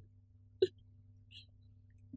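A woman's single short sob, a sharp catch of breath about half a second in, over a low steady hum.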